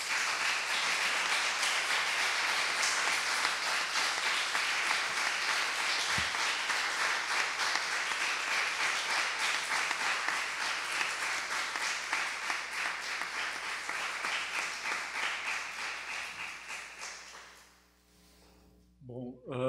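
Audience applauding: a long round of clapping from a roomful of people that holds steady, then dies away over the last few seconds.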